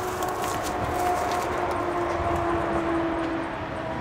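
A steady mechanical hum with a few held pitches, fading near the end, under light clinks and scrapes as a strap is worked around the rusty Dana 60 axle tube.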